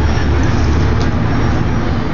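Steady low engine rumble close by, with no break or change, and voices faintly under it.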